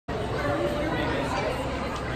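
Indistinct chatter of several people talking in a large indoor public space.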